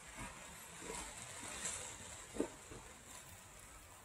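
Quiet handling sounds: footsteps on dirt and a few light knocks as crucible tongs are worked, with one sharper metallic click about two and a half seconds in.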